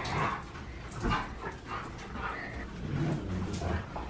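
Two Siberian huskies playing, one of them a puppy, making short, quiet whines and yips.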